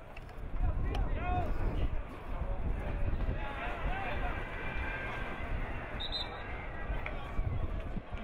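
Football players' voices shouting short calls to one another during open play, over a steady low rumble.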